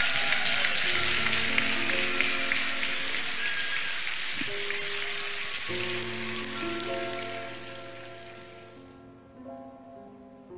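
Audience applause, loud at first and fading away over several seconds, over soft instrumental music with long held notes that carries on alone near the end.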